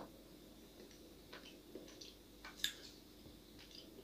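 Faint crunches of a piece of hard, dried pink edible clay being bitten and chewed: a few quiet, scattered crackles, the clearest just before three seconds in.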